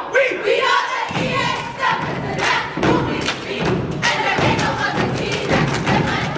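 A step team stepping: stomps on the stage floor and hand claps in quick, sharp strokes, with voices calling and chanting over them. A voice calls out in the first second, and the stomps and claps start about a second in.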